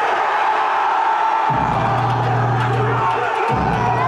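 Live hip-hop track played loud through a concert PA. The heavy bass line is missing for about the first second and a half, comes back, drops out briefly again just after three seconds, then returns.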